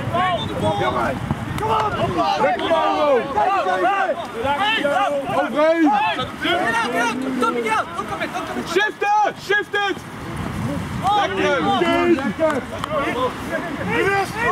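Rugby players shouting calls to one another during play, several raised voices overlapping, with a short lull about two-thirds of the way through.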